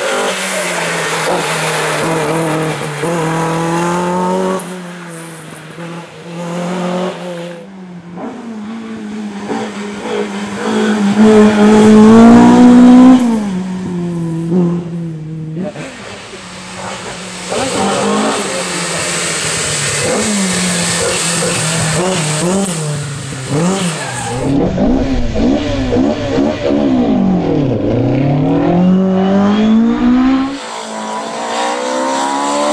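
Ford Escort Mk2 rally car's engine at full stage pace, revving hard, its note repeatedly climbing and dropping with gear changes. It is heard over several short passes, loudest a little before the midpoint, and near the end the note dips and then climbs again.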